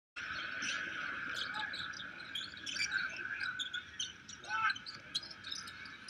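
Arena crowd din during live basketball play, with many short squeaks of sneakers on the hardwood court and the ball bouncing.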